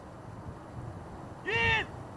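Faint outdoor background, then near the end a single loud shouted call, rising and then falling in pitch, from the crew of a man-powered traction trebuchet holding its pull ropes.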